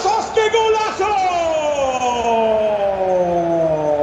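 Spanish-language radio commentator's drawn-out goal cry: one long held 'gol' shout whose pitch falls slowly for about three seconds.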